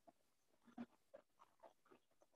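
Near silence: room tone with a few faint, irregular soft clicks, the clearest a little under a second in.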